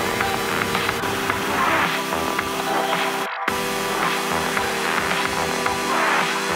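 Background music, with a brief break about three seconds in.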